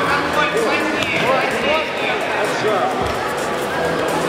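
Many overlapping voices talking and calling out in a large hall, with music playing in the background.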